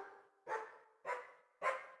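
A recorded dog-bark sample played back through GarageBand's Sampler on an iPad, triggered note by note from the on-screen keyboard. Short pitched barks come about two a second, each starting sharply and dying away, and they climb in pitch from note to note.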